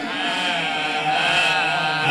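Men's voices chanting in unison through microphones, holding one long steady note, in the sung recitation of a majlis.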